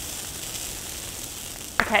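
A bonfire of brush and a dry Christmas tree burning: a steady hiss with faint crackling.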